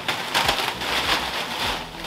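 Heavy black plastic sheeting rustling and crinkling as it is yanked and dragged over a dirt floor by a person and a dog tugging at it.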